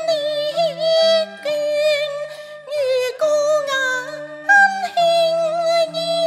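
Cantonese opera accompaniment: a high lead melody with wide vibrato and slides, over held lower notes that step from pitch to pitch.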